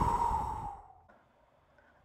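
A woman blowing out a long, breathy breath, strongest at the start and fading away over about a second, as if blowing on someone to cool them off.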